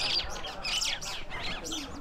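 Small birds chirping in a quick series of short, high calls.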